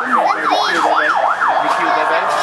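A siren in a fast yelp, its pitch sweeping rapidly up and down about three times a second, with voices underneath; it stops near the end.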